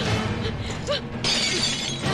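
Dramatic film background music, cut by a sudden shattering crash a little over a second in.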